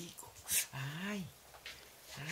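A person's short cry of "ay!" that rises and falls in pitch as a kitten bites and claws at their hand in play. A brief, sharp rush of noise comes just before it.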